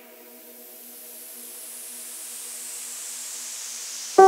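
Drum and bass breakdown: a faint held synth chord with no drums or bass, under a white-noise riser that swells steadily louder and brighter, building toward the drop.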